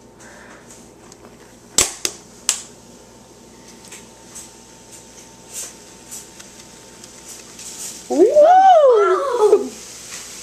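Plastic water bottle and balloon being handled, with two sharp clicks about two seconds in and a few light ticks after, while baking soda drops into vinegar and the balloon fills. Near the end comes the loudest sound, a drawn-out exclamation whose pitch rises and then falls.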